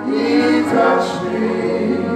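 Gospel singing by a group of voices, a lead pair with backing singers, through microphones, with long held notes.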